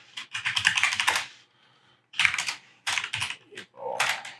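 Typing on a computer keyboard: quick runs of keystrokes, about four of them, with short pauses between.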